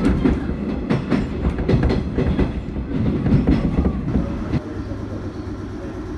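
A 719 series electric train running, heard from inside the passenger cabin: a steady low rumble with irregular clacks of the wheels over rail joints.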